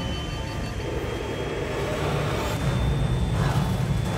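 Steady low rumble of a four-engine propeller transport plane's engines in flight, heard from the cockpit and swelling slightly in the second half, with thin high sustained tones of eerie music above it.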